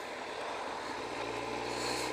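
Low steady engine hum, as of a motor vehicle, coming in about a second in over faint outdoor background noise.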